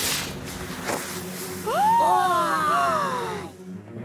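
Cartoon hand-held signal flare going off: a sudden hiss that starts at once and fades away over about three seconds. Background music runs under it, and a louder pitched sound glides up and down in the middle.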